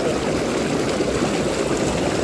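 Hot tub air-bubble jets running, churning the water in a steady bubbling, gurgling wash.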